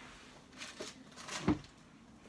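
Candle packaging and jar being handled: a soft rustle, then a single knock about one and a half seconds in.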